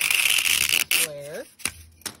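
A box-cutter blade slicing through a block of floral foam: a scratchy, crunching rasp lasting about a second. A brief voice follows, then a couple of light clicks near the end.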